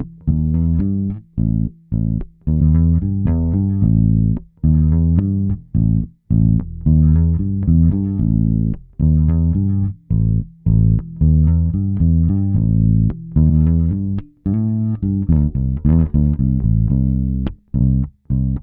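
A direct-input electric bass, a G&L, playing a plucked bass line, soloed and played back with a clean-console emulation switched in and out for comparison. The effect adds only a subtle low-mid lift, around 200 Hz.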